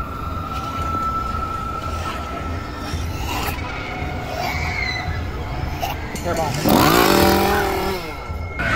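Outdoor Halloween scare-zone ambience: low throbbing background music and the murmur of people walking, with a steady high tone fading out in the first second. Near the end comes a loud, drawn-out cry whose pitch wavers down and up.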